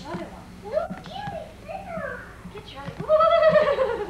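A young child's high-pitched squeals and vocalizing, in short rising and falling calls, then one long, wavering squeal about three seconds in, the loudest sound.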